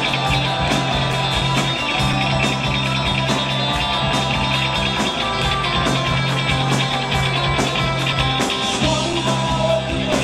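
A rock band playing live: electric guitar, electric bass and drum kit, with a steady drum beat under a low held note.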